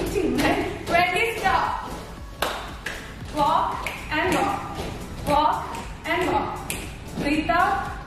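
A person's voice in short calls, roughly one every second, with a few light taps between them.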